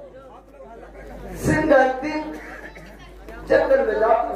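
A man's voice through a stage microphone and PA, delivering theatrical lines in short phrases with pauses between them, with a hall-like echo.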